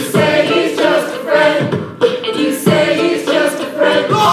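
Live pop chorus sung by several voices together over grand piano, with a steady beat under the singing.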